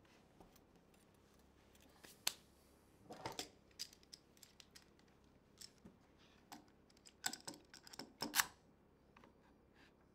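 A scattering of faint, light clicks and knocks, a few at a time, with one small cluster a little after two seconds in and a denser, louder run between seven and eight and a half seconds in.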